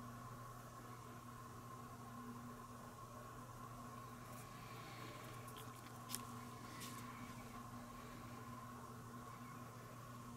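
Quiet room tone with a steady faint hum, and a few small clicks from hands working fine wire branches with tweezers, the sharpest about six seconds in.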